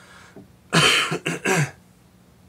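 A man coughing: a quick run of about three coughs about a second in.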